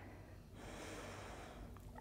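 A faint inhale through the nose: a soft breath noise that starts about half a second in and fades near the end.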